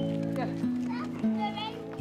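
Background music of held low notes that step up in pitch a couple of times, with faint children's voices in the street ambience.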